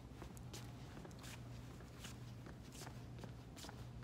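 Faint footsteps: a few soft, irregular steps of a person walking, over a steady low hum.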